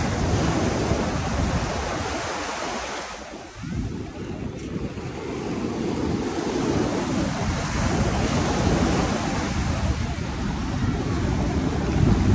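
Small waves washing onto a sandy shore, with wind buffeting the microphone as a low rumble. The noise dips briefly about three and a half seconds in, then picks back up.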